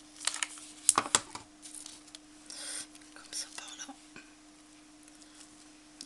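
Tabletop crafting sounds: a few sharp clicks in the first second and a half, then brief rustles as a hot glue gun is used and a plastic artificial flower sprig is pressed onto a burlap-covered frame, over a faint steady low hum.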